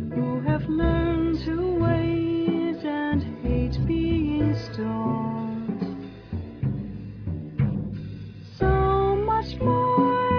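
Jazz ensemble playing held melody notes over bass and drums. The band thins out and grows quieter past the middle, then comes back in full near the end.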